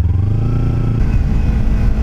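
Kawasaki Ninja 300 parallel-twin engine running as the motorcycle rides on under throttle, with wind noise on a helmet-mounted microphone.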